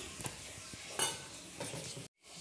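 Metal ladle stirring and scraping mutton curry in an aluminium pressure cooker, with a few sharp clinks, the loudest about a second in, over a faint steady sizzle.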